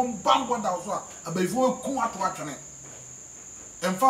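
A man speaking, with a pause of about a second near the end, over a steady high-pitched tone that runs underneath throughout.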